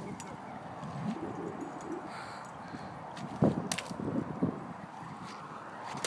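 A thrown egg striking a pole: one sharp crack about three and a half seconds in, over faint background noise.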